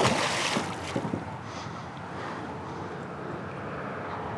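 A hooked musky thrashing at the surface beside a kayak, splashing water hard for about the first second. After that comes a steadier, quieter rush of wind and water.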